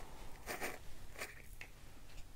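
Screw-top lid of a small plastic jar of embossing powder being twisted open: a few faint, short scratchy rasps.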